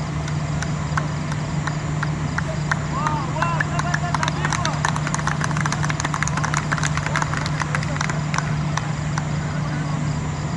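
A few people clapping, irregularly, from a few seconds in until near the end, with voices calling on the field over a steady low hum.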